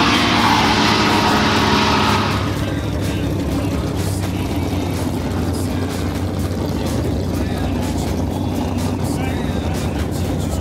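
Race car engine at a track, loud for the first two seconds or so, then settling into a steadier, quieter drone, with a track announcer's voice faintly behind it.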